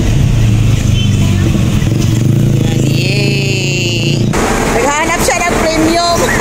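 Car engine running with a steady low hum, heard from inside the cabin. About four seconds in, the sound cuts abruptly to outdoor noise with voices.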